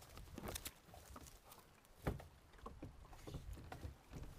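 Faint rustling and scattered soft knocks of dry grass on a duck blind's thatched cover being brushed and shifted, with one louder knock about two seconds in.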